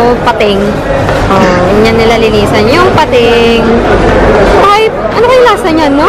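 Voices talking loudly over a steady low background rumble.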